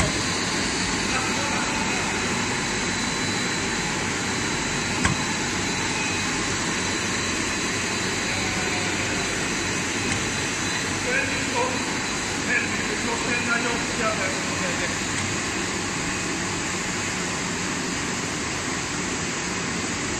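Rubber hose extrusion production line running: a steady machinery hum and hiss with a thin high whine over it, and a single sharp click about five seconds in.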